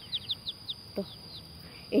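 Young chickens peeping: a run of short, high, falling peeps, about half a dozen in the first second and a half, trailing off.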